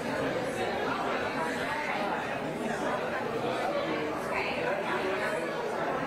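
Indistinct chatter of many people talking at once, overlapping voices at a steady level with no single voice standing out.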